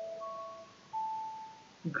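Soft electronic chime notes. A held chord fades out in the first half-second while a higher note sounds, then a slightly lower note holds for most of a second, like a two-note doorbell chime.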